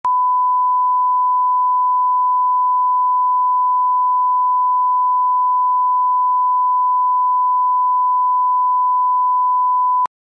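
A 1 kHz line-up tone, the reference tone that goes with colour bars at the head of a video master to set audio levels: one pure, unwavering pitch at a constant loud level that cuts off suddenly.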